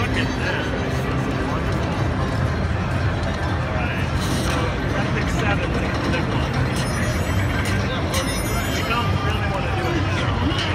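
Busy exhibition-hall din: many voices talking over a steady low rumble, mixed with electronic slot-machine game sounds and music, with a run of high chiming tones about seven to nine seconds in.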